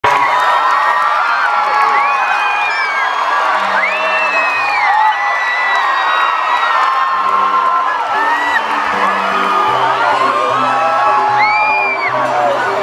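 Concert crowd screaming and whooping in many overlapping high cries over live music, with steady low held notes coming in after a few seconds.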